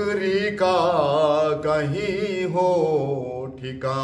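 A man singing a manqabat, an Urdu devotional poem, in long, ornamented held notes with a wavering pitch. He takes a short breath about three seconds in and then goes on singing.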